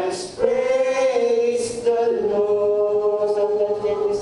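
A group of voices singing a slow worship chorus together, holding long notes, with brief breaks between phrases.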